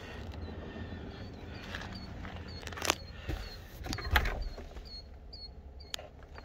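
A few clicks and knocks from car interior trim being handled, the sharpest about three and four seconds in, over a low steady rumble. A faint high chirp repeats about twice a second.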